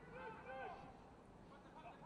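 Very quiet match ambience, near silence, with faint distant voices in the first second.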